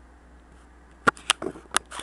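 Handling noise from a handheld camera being moved: a quick, irregular run of five or so sharp clicks and knocks starting about a second in, after faint room hiss.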